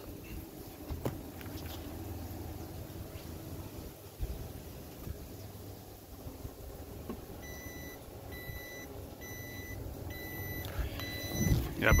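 Boat engine alarm beeping, a high tone pulsing a little over twice a second, starting about seven and a half seconds in. The engine is not running, so the alarm sounds for lack of oil pressure.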